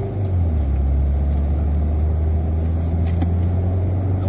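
A car running, heard from inside the cabin as a steady low rumble.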